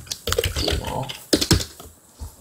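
Typing on a computer keyboard: a quick run of keystrokes, then a couple of louder key strikes about one and a half seconds in.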